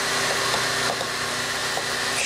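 A steady hissing, whooshing noise with a faint hum in it, holding level without a break.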